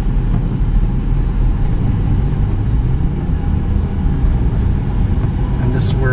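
Steady low rumble of road and engine noise heard from inside a moving car's cabin, driving on a wet road.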